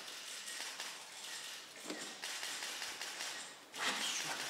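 A climber's hands and rubber shoes scuffing and knocking on plastic bouldering holds, with a small knock about two seconds in.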